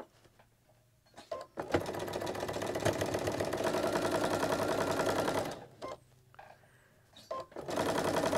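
Electric sewing machine stitching a straight seam through pieced quilt fabric, where the seams cross. It runs steadily for about four seconds from nearly two seconds in, stops, then starts again just before the end, with a few light clicks around the pauses.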